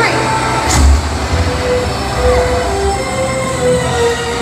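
Ride vehicle rumbling as it lifts off and moves along its track, a low rumble that swells about a second in, with the ride's soundtrack music and effects playing over it.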